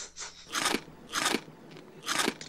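Crunchy bites into dry bread rusks: a softer crunch at the start, then two loud crunches about half a second apart.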